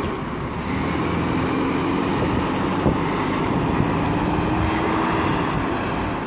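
Road traffic passing close by: a steady rush of road noise with an engine hum that rises slowly in pitch through the middle.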